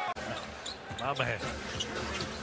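Arena sound from a basketball game: a basketball bouncing on the hardwood court, with faint voices in the background.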